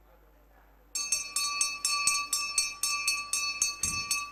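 A temple hand bell (ghanta) starts ringing about a second in. It is shaken rapidly and continuously, about six strokes a second, with a bright, lingering ring.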